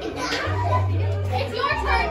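Children shouting and chattering over background music with a deep bass line.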